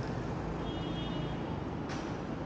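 City street traffic: a steady low rumble of road vehicles, with a faint high tone lasting about a second in the middle and a sharp click near the end.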